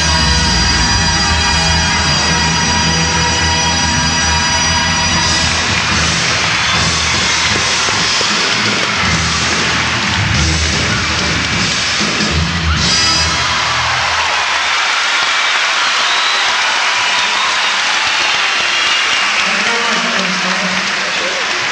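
A live band ends a song on a long held chord, with a few more band hits, while a large concert crowd cheers and applauds. The band drops out about two-thirds of the way through, leaving only the crowd's cheering and applause.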